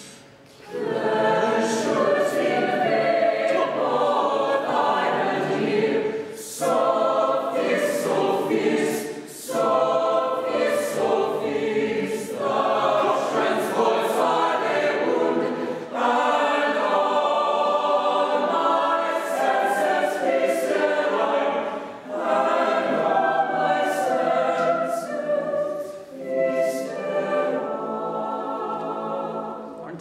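Mixed-voice choir singing sustained chords in several phrases, separated by brief pauses for breath.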